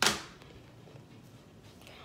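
A single sharp clack of a hard object knocking against a surface, ringing off briefly, followed by a quiet room.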